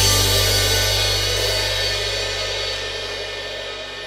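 Drum-kit cymbals ringing out and fading steadily after the final crash of the song, with the backing track's last held chord sounding low underneath.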